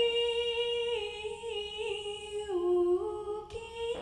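A woman singing a folk love song unaccompanied into a microphone, holding long notes that step down in pitch about halfway through and rise again near the end.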